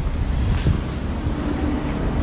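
Wind buffeting the camera's microphone outdoors, an uneven low rumble.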